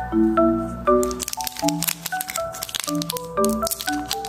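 Background music melody, with dense crackling and crinkling of a plastic candy wrapper being handled and torn open starting about a second in.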